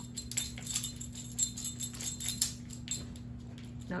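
A dog's metal collar tags jingling in an irregular run of quick clicks as the dog scratches at an itchy mosquito bite.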